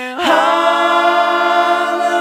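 Voices singing a sustained, choir-like chord in close harmony, with no instruments. It moves to a new held chord a moment after the start.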